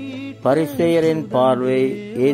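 A man's voice chanting in a melodic, sung style, entering strongly about half a second in, over a steady low drone of background music.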